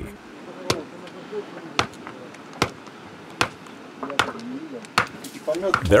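A short-handled tool striking stony ground: five sharp chopping blows, a second or so apart.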